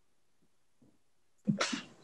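A person's short, sharp burst of breath noise about one and a half seconds in, after near silence.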